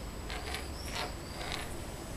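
Wax crayon scraping and squeaking on a painted wall in quick scribbling strokes, a few scratches a second.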